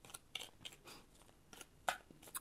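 Tarot cards being handled and slid off the deck: a few faint, irregular snaps and clicks of card stock, one louder just before the end.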